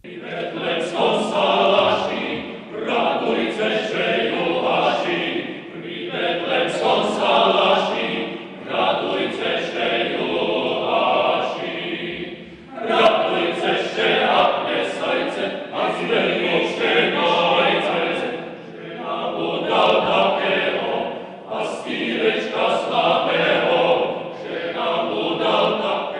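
Male vocal ensemble singing a cappella in flowing phrases, with short breaks between phrases every few seconds.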